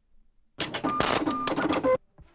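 A short burst of rapid mechanical clicking and clatter with brief ringing tones, starting about half a second in and cutting off suddenly at the end.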